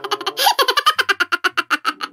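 A person giggling: a quick run of short, evenly spaced laughs, about eight a second.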